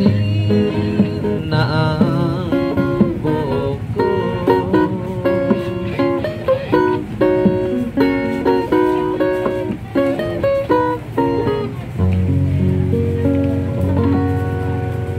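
Street busker's acoustic guitar strummed under a harmonica played in a neck rack, the harmonica carrying the melody in held, chord-like notes with a wavering pitch early on.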